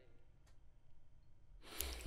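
Near-silent pause in a small room, then a man's audible breath, a short breathy rush, about a second and a half in.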